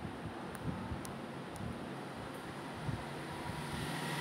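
Steady background noise with a faint low hum and a few faint clicks in the first two seconds.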